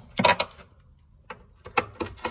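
A few sharp metallic clicks and a brief clatter from a hand ratchet and socket extension being handled and fitted onto a screw. There is a short burst of clicks just after the start and a few single clicks near the end.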